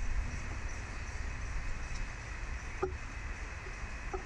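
Steady low rumble of outdoor background noise, with one brief short sound about three seconds in.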